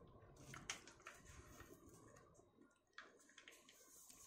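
Faint rustling and creasing of a sheet of paper being folded and pressed flat by hand, with a few soft ticks.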